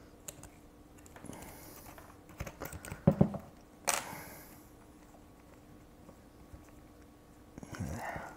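Small clicks and knocks of a Sky-Watcher AZ-GTI telescope mount's housing and parts being handled while its threaded ring is worked loose, with a louder knock about three seconds in and a sharp clack near four seconds as an Allen key is put down on the bench.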